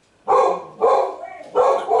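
A dog barking three times in quick succession, the dog that goes off whenever the neighbours move about.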